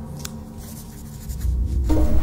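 Pencil scratching across paper as a hand writes on a notepad, over low music that grows louder in the second half.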